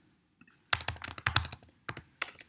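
Typing on a computer keyboard: a quick run of keystrokes beginning under a second in, as the word "return" is typed into a line of Python code.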